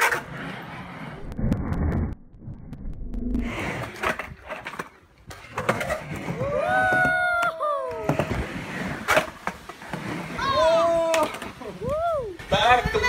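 Skateboard wheels rolling and grinding on a concrete bowl, with sharp clacks of the board. A person's voice calls out in long whoops around the middle and again near the end.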